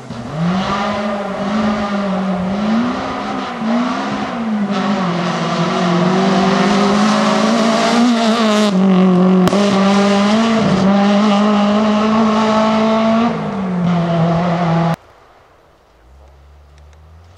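BMW 3 Series rally car's engine under hard acceleration on a gravel stage. Its pitch rises and falls several times in the first few seconds with gear changes and lifts, then holds high and steady. It cuts off suddenly near the end.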